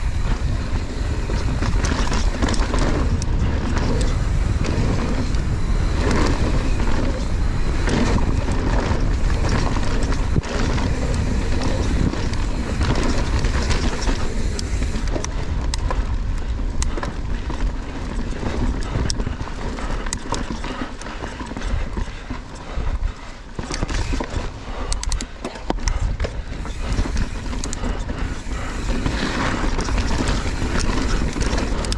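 Mountain bike ridden fast down a dirt forest trail, heard close up from a camera on the rider: wind rushing over the microphone, tyres on dirt and a constant rattle of chain and frame knocking over roots and bumps. The noise eases briefly about three-quarters of the way through.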